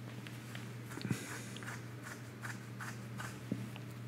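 Quiet room tone at a desk: a steady low hum with a scattered handful of faint, short clicks and taps.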